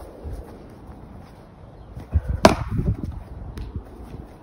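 A single sharp knock about two and a half seconds in, with a softer knock just before it.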